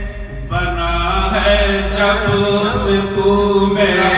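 A man singing a line of Urdu poetry in the melodic tarannum style of a mushaira, through a microphone and PA, drawing out long held notes that start about half a second in.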